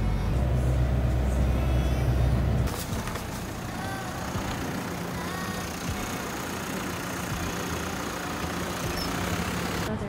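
Bus engine rumbling, heard from inside the moving bus, then an abrupt change about two and a half seconds in to quieter street noise with a bus idling at a stop, a steady low hum.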